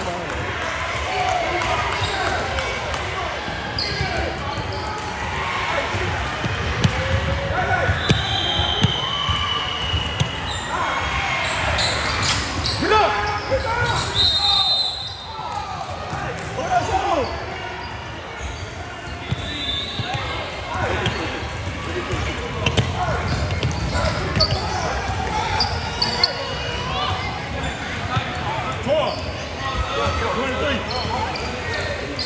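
Basketball bouncing on a gym's hardwood floor amid shouting and talking from players and spectators, echoing in the large hall, with a few short high-pitched squeaks.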